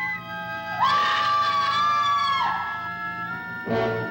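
Eerie horror film score: a sustained dissonant chord, over which a high wailing tone swoops up, holds for about a second and a half and falls away. A fresh accent enters near the end.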